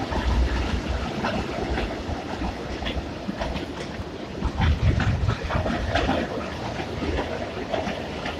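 Freight train of open-top wagons passing close by, its wheels rumbling and clacking over the rails with many short irregular clicks. The rumble swells briefly about half a second in and again around the middle.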